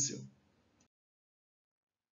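The tail of a man's spoken phrase fading out in the first moment, then dead silence.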